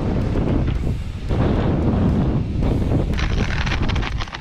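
Wind buffeting the microphone: a loud, low rumbling noise with no clear pitch that eases briefly about a second in and then comes back.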